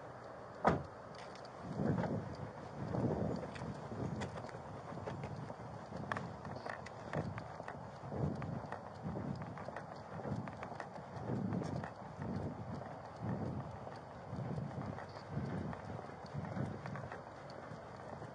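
Footsteps of a person walking at an even pace, about one step every three-quarters of a second, heard through a body-worn camera's microphone, with a single sharp click about a second in.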